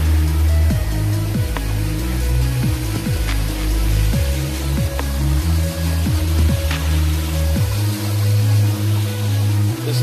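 Background music with a deep bass line in held notes and repeated quick downward-sliding notes.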